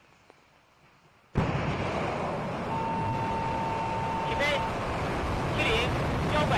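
Long March 5 rocket engines at liftoff: loud, dense rumbling noise that cuts in suddenly about a second in and holds steady, with a brief steady beep in the middle.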